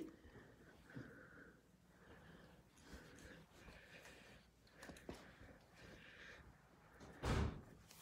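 Faint handling and rustling of quilted fabric during pressing, then one dull thump about seven seconds in.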